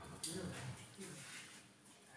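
Faint, indistinct voices of people talking in the hall, with a brief click just after the start.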